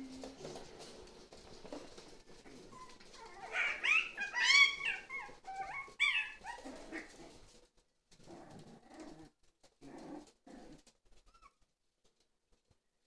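Jack Russell Terrier puppies whining and yelping in high-pitched, wavering cries, loudest between about four and six seconds in, then only softer short sounds.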